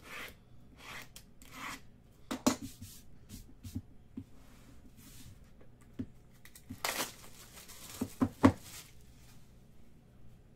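Small cardboard trading-card boxes being handled: brushing and rubbing strokes as they slide against each other, a sharp knock about two and a half seconds in, a scraping swish near seven seconds, then two knocks just after eight seconds as a box is set down on the table, the second the loudest.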